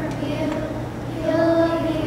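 Children's choir singing in unison on long held notes, swelling louder on a note about a second and a half in.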